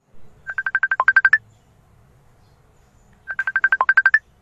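Mobile phone ringtone for an incoming call: a quick run of about a dozen beeps, played twice about three seconds apart.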